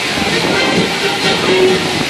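Amusement ride music playing under a dense hissing, rushing noise.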